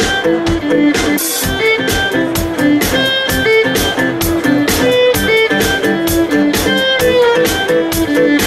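Live instrumental music from a trio of acoustic guitar, fiddle and drum kit, playing an upbeat tune over a steady drum beat.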